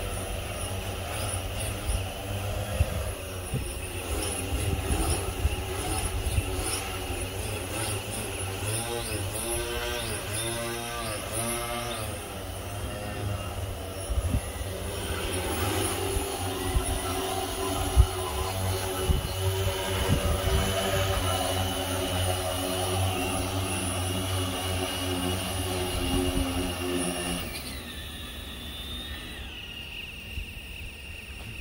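Propellers of a 1200 mm six-rotor drone droning as it hovers and manoeuvres low overhead. The steady stack of tones sweeps up and down in pitch a few times about ten seconds in, and the drone sound falls away a couple of seconds before the end.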